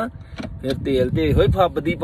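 A man speaking inside a car after a brief pause, over the low rumble of the car.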